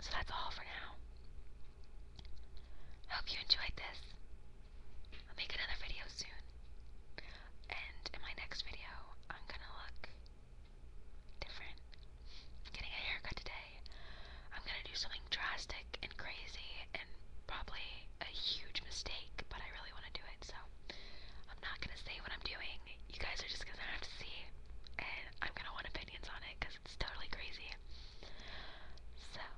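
A woman whispering close to the microphone in phrases with short pauses.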